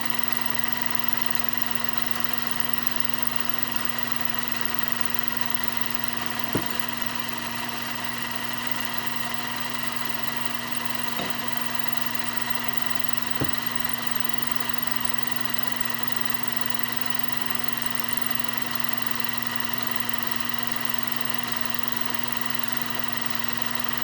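Sailrite 111 industrial compound-feed sewing machine running steadily at full speed to wind a bobbin: an even motor hum and whine, with a few light clicks.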